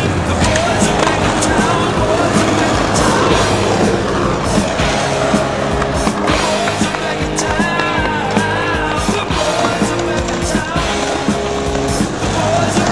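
Skateboard sounds, wheels rolling on concrete with sharp clacks and impacts of the board, over a music track with a melodic line.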